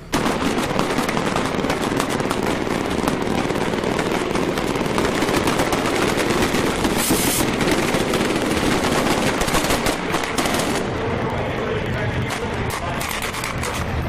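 Machine guns rattling in rapid, continuous fire from fast assault boats, over the boats' engines and spray. The firing starts suddenly and stays loud throughout.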